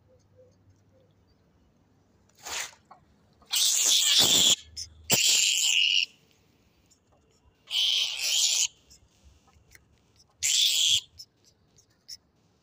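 Rat trapped in a wire-mesh cage trap giving five harsh, hissing screeches, each up to about a second long, with pauses between them.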